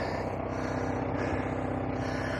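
Narrowboat engine idling steadily, a low even hum.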